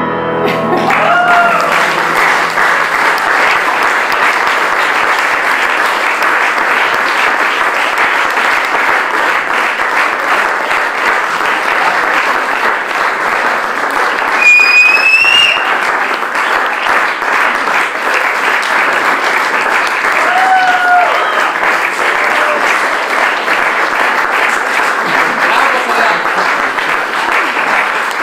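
Audience applauding steadily as the last notes of a santur and piano piece die away at the start. A few short calls ring out from the audience over the clapping, one high-pitched about halfway through.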